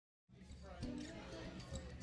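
Faint voices mixed with music, coming in after a brief moment of silence, with a knock about a second in.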